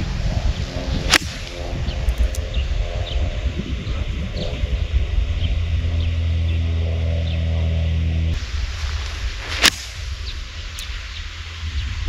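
Two golf iron shots off the tee, each a single sharp click of clubface on ball: one about a second in, from a nine iron, and another near ten seconds. A low steady rumble runs under the first eight seconds and then drops away.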